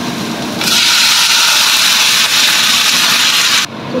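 Water poured from a pot into a hot wok of frying vegetables, hissing and sizzling loudly for about three seconds, then stopping abruptly.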